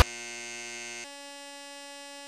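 A steady electronic buzzing tone, which changes to another held pitch about a second in.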